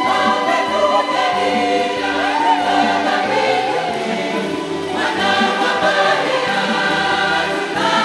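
A choir singing a Swahili church hymn with instrumental accompaniment and a bass line that moves every second or so.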